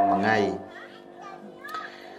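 A man's voice preaching in Khmer, his phrase ending about half a second in, followed by a pause filled with faint background sound and brief faint voices.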